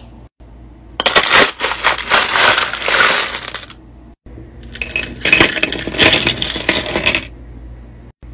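Tumbled stones and raw crystal pieces clattering and clinking against each other as a plastic scoop digs into a bin of them, in two long rattling bursts. The second burst is the scoop's load being tipped out into a bowl.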